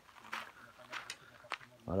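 Footsteps crunching on loose gravel, several separate steps.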